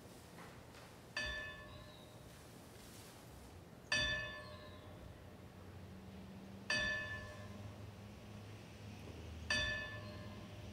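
A single bell tolling at an even, slow pace: four strokes about three seconds apart, each ringing out and fading, the second one loudest.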